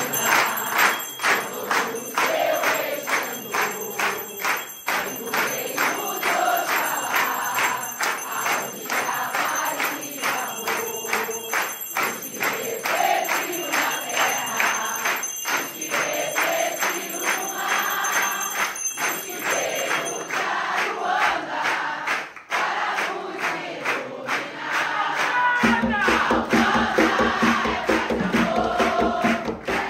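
A congregation singing an Umbanda chant (ponto) together, keeping time with steady hand clapping at about two to three claps a second.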